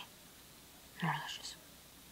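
A child's voice: one brief, quiet utterance about a second in, over low room noise.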